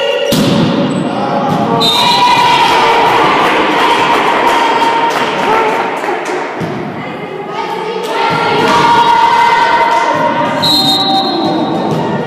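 Volleyball being struck, a few thuds, amid many voices shouting and cheering at once in a large gym.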